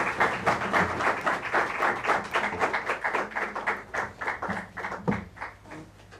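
Audience applauding, many hands clapping together, growing sparser and fading away toward the end.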